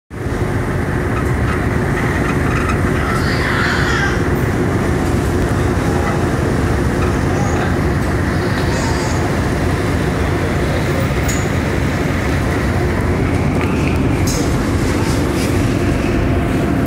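Car ferry's engines running under way: a loud, steady low drone with a constant hum in it.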